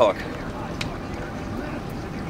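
Steady wind noise on the microphone over open water, an even hiss with no engine tone, with one small click a little under a second in.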